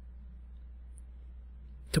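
Pause in a man's narration: a steady low electrical hum with faint hiss underneath, and his voice coming back in right at the end.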